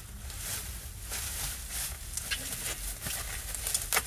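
Plastic bubble wrap crinkling and rustling as it is pulled and unwrapped by hand, with a sharp click near the end.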